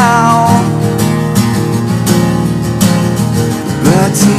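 Takamine acoustic guitar strummed in a steady rhythm of full chords. A man's held sung note fades out in the first half second, and a new sung phrase begins right at the end.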